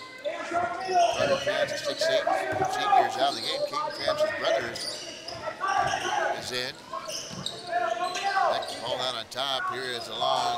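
A basketball being dribbled on a hardwood gym floor during live play, with shouting voices of players and spectators throughout.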